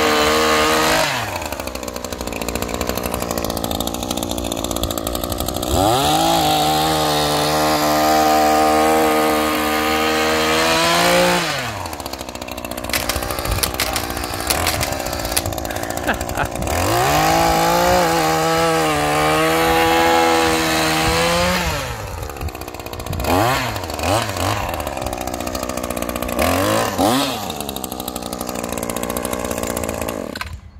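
Shindaiwa M262 multi-tool's small two-stroke engine spinning a power broom's rubber paddles, opened up to full throttle three times for about five seconds each and dropping back to idle in between, then blipped briefly several times near the end.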